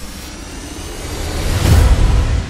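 Intro sound effect: a rising whoosh that swells and peaks in a deep boom near the end.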